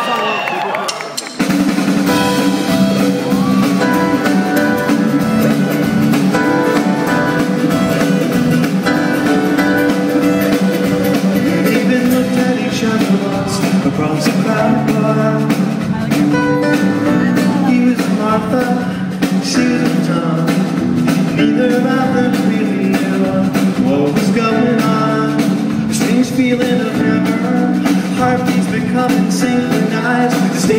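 A live band kicks in about a second and a half in and plays the song's introduction on piano, electric guitars and drum kit, loud and steady.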